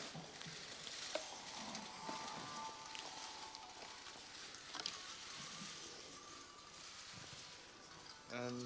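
Faint room ambience: a low, even hiss with a few scattered clicks.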